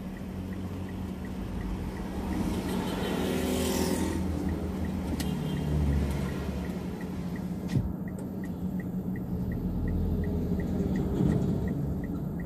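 Street traffic heard from inside a waiting car's cabin: a steady engine hum, with vehicles driving past, the loudest pass about three to four seconds in. An even ticking of the car's turn-signal indicator, about two to three ticks a second, grows clearer in the second half.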